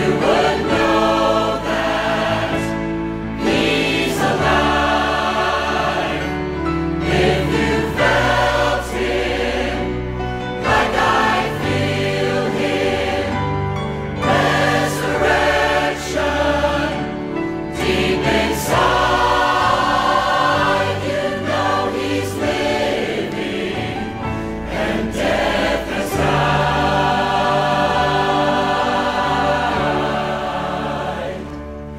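Large mixed church choir singing a gospel song in full harmony over backing music, with sustained, swelling phrases.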